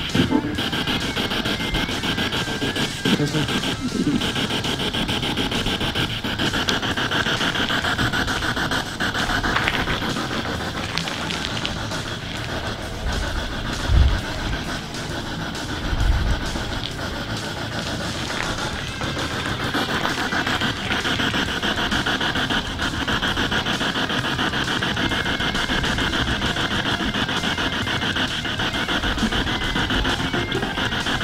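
Spirit box (ghost box) radio sweeping rapidly through stations: continuous choppy static hiss broken by brief snatches of broadcast audio. Two short low thumps about halfway through.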